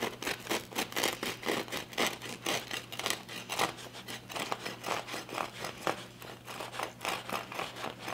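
Serrated knife sawing through a freshly baked sourdough garlic bagel on a wooden cutting board: a steady run of short back-and-forth strokes, about three a second.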